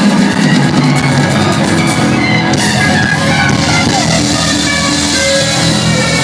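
Live rock band playing loud and steady, with electric guitar over a drum kit, amplified in a large concert hall.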